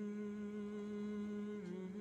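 A quiet, steady hummed tone held on one low note, dipping slightly in pitch about one and a half seconds in.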